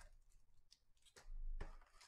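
Foil trading-card packs crinkling faintly as hands sort through them in a cardboard hobby box, with a louder rustle about halfway through.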